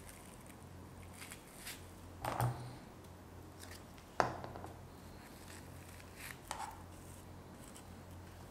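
Quiet handling sounds of fabric flower petals, thread and a small plastic glue bottle: a soft rustle about two seconds in, a sharp click just past four seconds, and a few faint small sounds near six and a half seconds, over a steady low hum.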